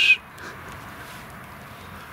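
The tail of a steady, high whistled note, which cuts off just after the start. It is followed by a faint, even outdoor hiss.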